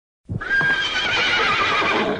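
A horse whinnying once: a single long neigh that begins about a quarter of a second in, its pitch quavering and sinking slightly as it goes.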